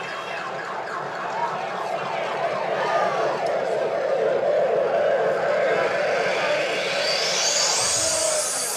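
Siren-like electronic wail played through the club PA, with wavering tones that swell in the middle and a sweep rising steadily in pitch over the last two seconds.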